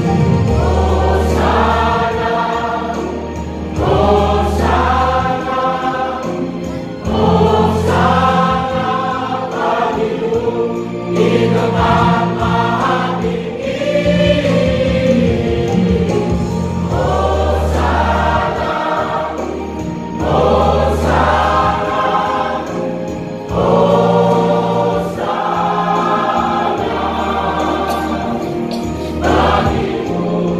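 Church choir singing a Christian song in phrases of held notes, with instrumental accompaniment underneath.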